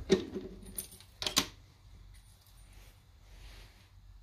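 A few sharp metallic clicks and clinks, four or so within the first second and a half, as a small turned aluminium part is loosened and taken out of a mini lathe's chuck with the lathe stopped.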